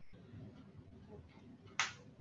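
Faint room noise over a video-call line, with one short, sharp click-like noise near the end.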